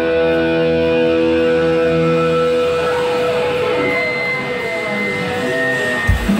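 Amplified electric guitars holding a ringing chord, which breaks off about two and a half seconds in into a noisy fading wash. A thin high steady tone sounds near the end.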